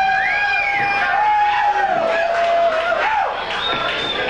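Audience at a live rock gig cheering between songs, with a long held tone that bends slightly in pitch and a short rising-and-falling glide above it early on.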